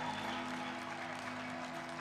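Congregation applauding in praise, over soft background music holding a steady chord.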